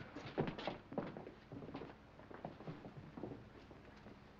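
Footsteps of several people walking off along a hallway: a quick run of steps, loudest in the first second, that thins out and fades by about three seconds in.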